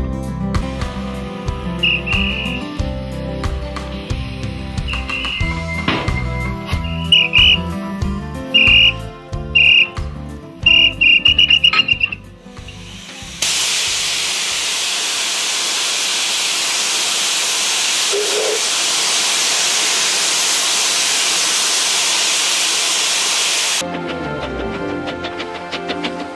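Guitar music with a series of short, high whistle toots over it, then, about halfway, a loud steady hiss of steam from a narrow-gauge steam locomotive, which cuts off suddenly at the end.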